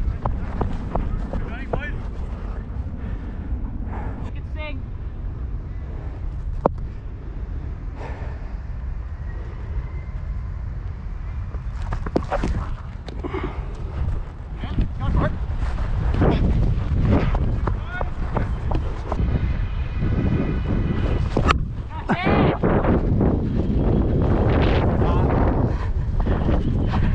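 Wind buffeting the microphone of a body-worn GoPro action camera, a steady low rumble, with players' voices calling out now and then and a few sharp knocks, the loudest about 21 seconds in.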